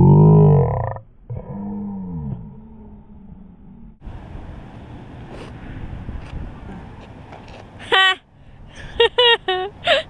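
A person's loud, drawn-out wordless vocal groan, falling in pitch, followed by a shorter falling one about a second and a half in.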